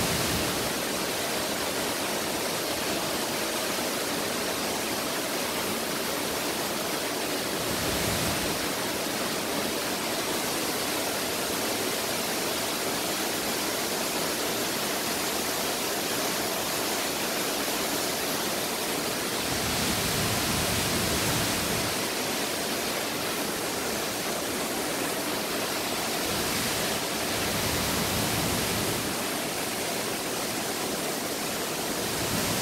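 Waterfall pouring, a steady full rushing of water with no break. A few brief low rumbles swell up about eight seconds in, around twenty seconds and near the end.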